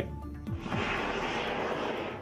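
A rushing aircraft noise that swells about half a second in and fades near the end, over background music.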